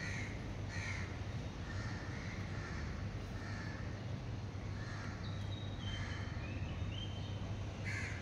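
Birds calling repeatedly in the early morning, short calls about once a second, with a few thin high descending notes near the end, over a steady low hum.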